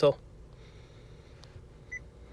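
A spoken word cut off at the start, then quiet cabin background and a short, high electronic beep from the 2018 Honda CR-V's voice-command system near the end.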